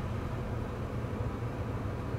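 Steady low rumble with a faint hiss inside a car cabin while the car sits stopped at a red light.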